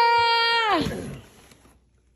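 A person's voice holding one high, steady sung note for about a second, sliding up at the start and down at the end before fading out, with quiet after.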